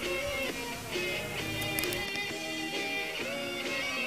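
Music: a guitar-led song, with plucked and strummed guitar notes.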